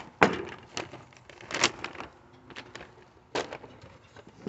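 Rodenticide pellets poured from a plastic bag into an empty one-gallon metal paint can, landing in about six separate sharp clatters spread over a few seconds.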